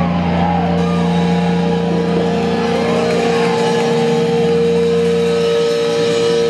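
Amplified electric guitars and bass holding a sustained, droning note without drums, with wavering feedback tones sliding up and down above it.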